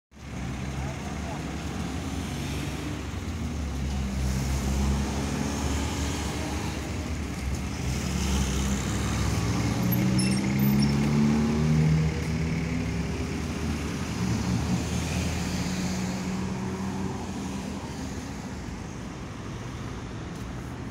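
Street traffic at a road crossing: a steady engine hum and tyre noise from passing motor vehicles, building to its loudest as a car passes close about ten to twelve seconds in, then easing off.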